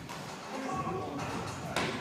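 A brief voice in the background, then a single sharp thud about three-quarters of the way in, from a freerunner's body or feet striking a surface during a parkour run.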